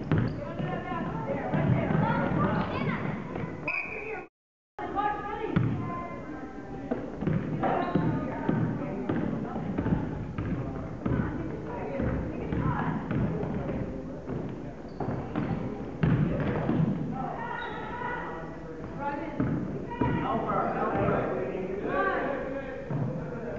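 A basketball being dribbled on a hardwood gym floor, under indistinct voices of players and spectators calling out in the gym. The audio cuts out completely for about half a second around four seconds in.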